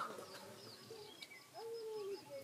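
Faint birdsong in a pause: a dove cooing, with one longer, low coo near the end, and small birds chirping faintly high in the background.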